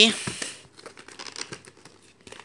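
A plastic VHS clamshell case being handled: a crinkling plastic rustle that fades within about half a second, then faint scattered clicks and taps as the tape is taken up.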